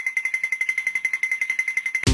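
Cartoon sound effect: a rapid, high-pitched ringing that pulses about fourteen times a second, like an electric alarm bell, and cuts off abruptly at the end.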